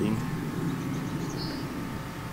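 Steady low background rumble with a faint, even hum and no clear single event.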